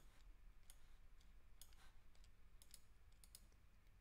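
Faint, scattered clicks of a computer mouse, about eight of them at uneven intervals, over near silence.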